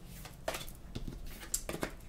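A few faint light taps and rustles of tarot cards being picked up from a tabletop.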